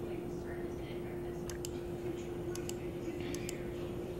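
A steady low electrical hum with faint hiss, broken by a few soft, sharp clicks, several coming in quick pairs, from about a second and a half in.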